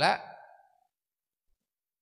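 The tail of a man's speech, a last word trailing off and fading out about half a second in, followed by complete silence.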